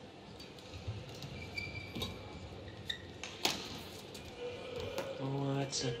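Badminton rally: rackets strike the shuttlecock with sharp cracks, about five of them in a few seconds, the loudest about three and a half seconds in. Short high shoe squeaks come from the court floor between the hits.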